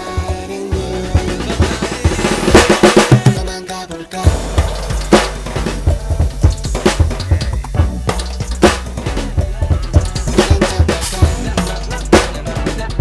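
Drum kit with Istanbul cymbals played over the song's backing track: a busy fill of rapid hits a few seconds in, a brief dip just before four seconds, then a steady groove of kick, snare and cymbal strokes.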